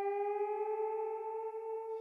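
A single held electronic tone with a rich, buzzy timbre that rises slightly in pitch as it sustains.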